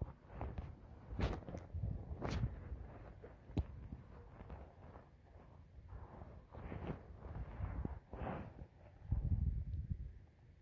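Irregular footsteps and rustling handling noise, with one sharp click about three and a half seconds in and a heavier low rumble near the end.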